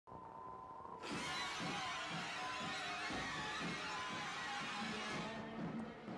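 Opening theme music over the show's title card; a hissy wash comes in suddenly about a second in over pitched, pulsing lines and thins out near the end.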